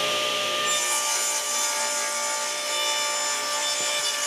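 Table saw ripping a half-inch plywood board: the motor and blade run with a steady whine, and about a second in the blade enters the wood and a loud hissing cutting noise joins it and holds.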